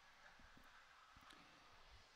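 Near silence: faint outdoor background noise with a few soft low knocks.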